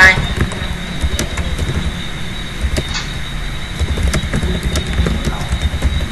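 A few scattered computer-keyboard key clicks as a short command is typed, over a steady low rumble of background noise.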